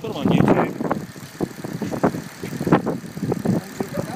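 BMW 325's straight-six petrol engine running at idle under the open bonnet, with uneven louder bursts over it.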